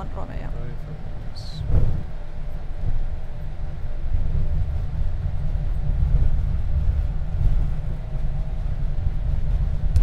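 Steady low rumble inside the cockpit of an Airbus A220 taxiing, its engines at idle, with a faint steady hum and a brief thump about two seconds in.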